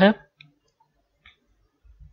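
Three faint, separate computer mouse clicks, spread over about two seconds.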